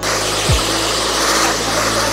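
Handheld hair dryer blowing a steady rush of air onto short hair, cutting in suddenly.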